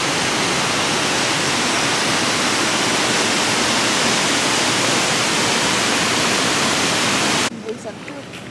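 Waterfall pouring into its plunge pool: a loud, steady rush of falling water that cuts off suddenly near the end.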